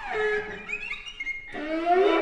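String quartet playing a graphic-score improvisation: high violin glides slide up and down over a held lower note, and a new rising note enters about one and a half seconds in.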